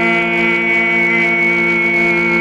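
Mongolian overtone (throat) singing: a steady low drone with a whistle-like high overtone note held above it.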